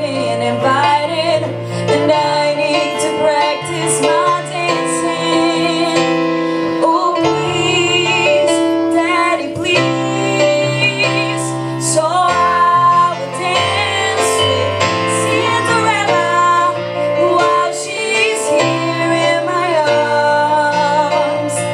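Live ballad performance: young female voices singing a slow song with vibrato over chords and bass notes played on a Yamaha Motif ES6 synthesizer keyboard.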